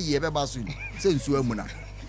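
People talking in a lively studio discussion over a steady low hum, with a brief high squeak about a second in.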